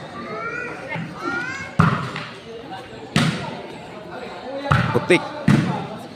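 A ball struck hard by bare feet on a concrete court, four sharp kicks about a second or more apart, with spectators calling and shouting in between.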